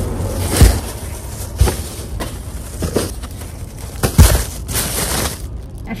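Plastic shopping bags rustling and crinkling as they are lifted from a shopping cart and loaded into a car's cargo area, with four thuds as bags are set down, the first and last the loudest.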